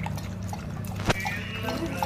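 A dog lapping water from a stainless steel bowl: a run of quick wet tongue clicks, with one sharper clink against the bowl about a second in, over a steady low hum.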